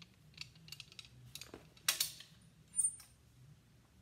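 Plastic clothes hangers clicking and scraping on a metal clothes rail as garments are hung up and taken down, with light ticks throughout and two louder clacks about two seconds in and just before three seconds.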